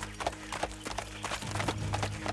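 Fast galloping hoofbeats, a quick run of knocks several a second, over a steady low drone in the music.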